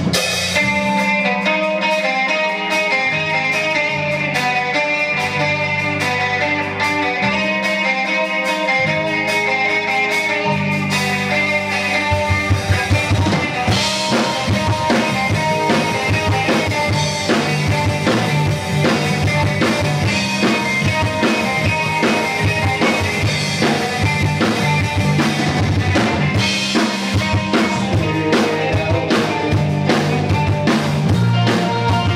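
Live rock band opening a song: electric guitar and bass guitar play held notes and melodic lines over a drum kit. About twelve seconds in the drumming becomes denser and the full band plays on loudly.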